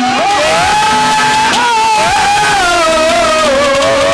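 Live Haryanvi ragni music: a man's voice holds long, gliding high notes over steady harmonium tones.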